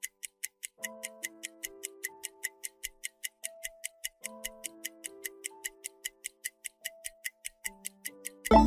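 Quiz countdown-timer ticking, a fast, even clock-like tick, over soft background music of held notes in a short repeating phrase.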